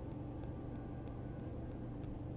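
Faint steady low hum with a light hiss: background room tone.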